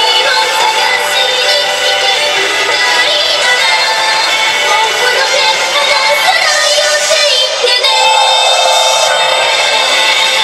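A woman singing a pop song live into a microphone over a loud instrumental backing track, amplified through the stage sound system.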